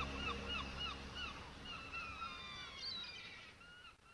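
Seagull cries, a recorded sound effect, repeating a few times a second over the last faint tail of the song's music. The cries grow fainter toward the end.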